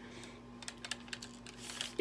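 Small, irregular metal clicks from the spring-loaded automatic hook-setter on a telescopic fishing rod being handled as it is readied for cocking, starting about half a second in.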